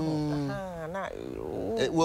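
A person's voice held on one steady pitch for about a second, like a drawn-out 'mm', then a short blur of overlapping voice sound.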